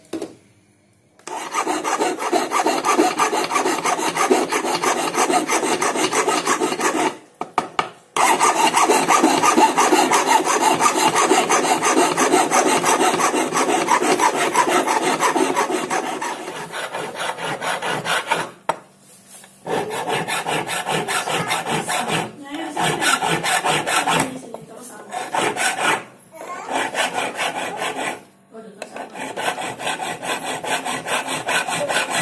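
Hand filing of silver with a long flat steel file: steady scraping strokes against the metal, starting about a second in and running in long bursts broken by short pauses.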